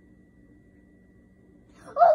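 Quiet room tone with a faint steady high-pitched whine, then a high voice breaks in loudly with drawn-out vocalizing just before the end.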